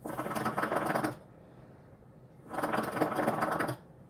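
Water bubbling in a shisha (hookah) base as someone draws on the hose, in two bursts of about a second each with a short pause between.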